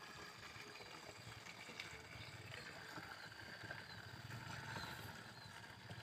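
Faint steady pour of a liquid pesticide mix from a bucket into the tank of a backpack sprayer, filling the sprayer before spraying.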